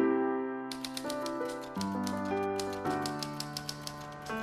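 Soft piano music, joined about a second in by a rapid run of typewriter keystroke clicks, several a second, as a typed-out title sound effect.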